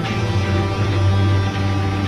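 Instrumental background music: sustained notes held over a steady, strong bass.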